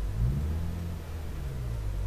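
Steady low background hum and rumble from the recording setup, under a pause in the speech.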